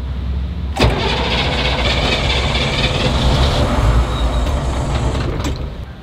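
Starter motor cranking a Humvee H1's diesel V8, which turns over but does not catch: a no-start. A click comes about a second in, then the cranking runs evenly, easing off near the end.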